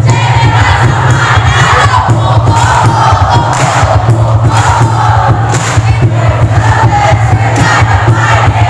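A cheer squad shouting a school yell in unison over loud music with a steady, thumping beat, amid crowd noise.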